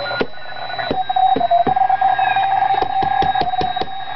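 Homebrew WBR regenerative receiver in oscillation, its audio output giving a steady heterodyne whistle on a data signal, with irregular sharp clicks. The pitch dips slightly and comes back about a second and a half in as the set is moved by hand, shifting a little in frequency but not much.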